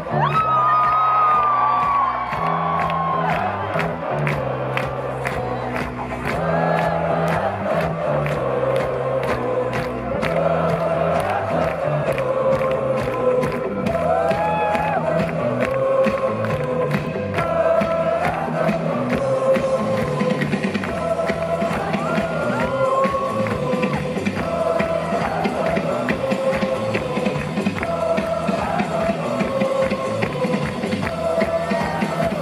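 Live rock music with a drum kit playing a steady beat over a bass line, and the crowd cheering and whooping throughout.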